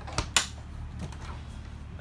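Dometic RV refrigerator door unlatched and pulled open: two sharp clicks a moment apart near the start, the second louder.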